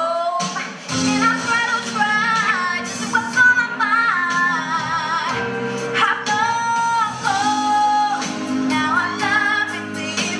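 A girl singing a slow ballad into a handheld microphone, her voice holding and bending long notes over sustained instrumental accompaniment.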